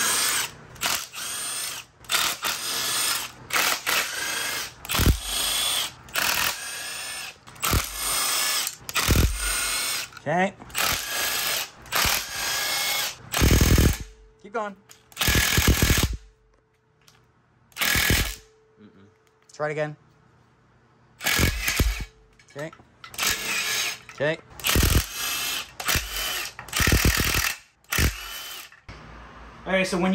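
A power tool backing out the oil pan bolts, running in many short bursts of about a second each, with a quieter pause around the middle.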